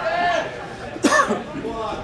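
Men's voices calling out during a football match, with a short, sudden, loud vocal burst about a second in.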